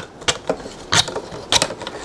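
A rod being pushed into a hole in a 3D-printed plastic turbine end plate, making a handful of uneven plastic clicks and scrapes.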